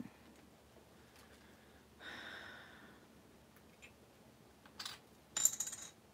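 Faint handling of a small metal tin of glitter on a tabletop: a soft scrape about two seconds in, then a short tap and a brief metallic clink near the end.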